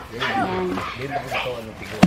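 Indistinct voices of people talking in the background.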